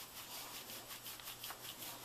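Faint rubbing sound with a quick, even rhythm.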